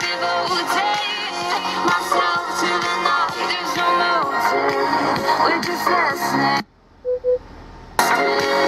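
F&D W5 mini Bluetooth speaker playing a pop song with a vocal line at full volume; its sound is unedited. The music cuts off suddenly about a second and a half before the end, followed by two short beeps.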